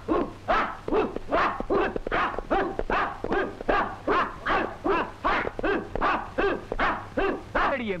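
A group of karate trainees shouting short rhythmic cries in unison as they drill, about two or three shouts a second, each falling in pitch.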